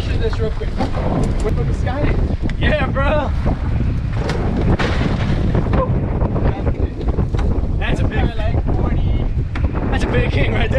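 Wind buffeting the microphone over the rush of rough seas around a small boat, with a few knocks on the deck.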